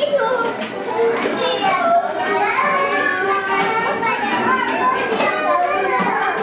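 Many children's voices chattering and calling out at once, overlapping.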